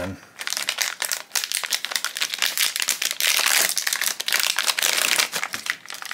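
Foil blind-box pouch crinkling and crackling as it is torn open and handled, in a dense run of quick crackles that stops near the end.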